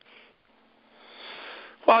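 A person drawing an audible breath in through the nose, lasting about a second, before starting to speak near the end.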